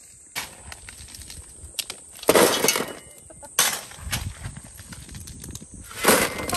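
Shovel scooping coarse gravel from a pile and tossing it into a wheelbarrow: crunching scrapes and stones clattering as they land, in several separate bursts, the loudest a little over two seconds in.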